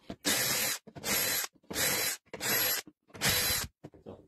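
DeWalt cordless drill boring five shelf-pin holes in quick succession through a Kreg shelf pin jig into OSB board, the bit stopped at set depth by a depth stop. Each hole is a short burst of about half a second, with brief pauses between as the drill moves from hole to hole.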